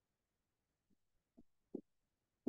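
Near silence: room tone, with a few faint, very short low sounds in the second half.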